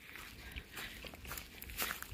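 Faint footsteps of a hiker walking on a dirt trail strewn with dry fallen leaves, a few soft irregular steps.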